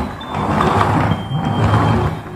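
Plastic wheels of a toy truck rolling across a wooden tabletop, a steady low rumbling noise as it is pushed along.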